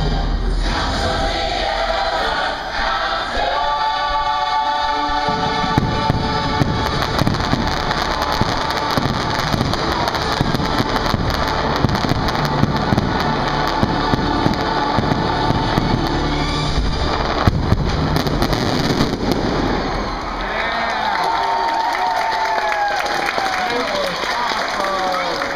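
A fireworks finale: rapid crackling and popping shell bursts with low booms, over show music with a choir singing. Near the end the crackling thins out and a crowd cheers and whoops.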